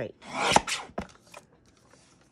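A Fiskars paper trimmer's arm blade coming down through paper: a rasp that swells and ends in a sharp snap about half a second in, then a light click.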